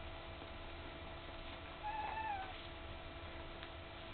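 A nearly three-week-old puppy gives a single short whine about two seconds in. The whine is high-pitched and rises slightly, then falls. A faint steady hum runs underneath.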